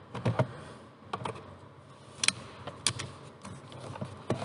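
Flat-blade screwdriver prying at the plastic locking tab of the instrument-cluster wiring-harness connector, making irregular sharp plastic clicks and taps, the loudest a little past two seconds in, as the latch is worked loose.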